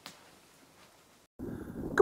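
Near silence, then from about one and a half seconds in, a soft steady hiss of wind on the microphone outdoors.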